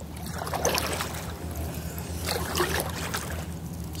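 Kayak paddle strokes in shallow water: short splashes and drips from the paddle blade about once a second, over a steady low hum.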